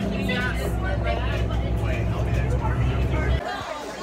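Steady low drone of a city bus's engine heard from inside the passenger cabin, with voices chattering in the background. It cuts off abruptly about three and a half seconds in.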